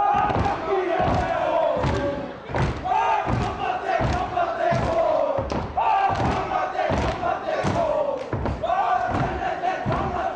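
A group of men performing a haka, shouting and chanting in unison in held phrases that fall in pitch and start again about every three seconds. Under the chant are regular thumps of stamping feet and slapping hands on a wooden floor.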